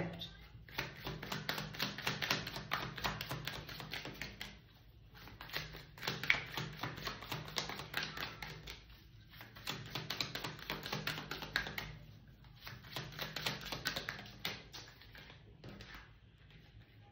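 A deck of tarot cards being shuffled by hand: four bursts of rapid card flicks and slaps, each lasting a few seconds with short pauses between them.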